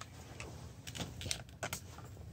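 A few faint, scattered clicks and taps, like small handling noises, over a quiet room.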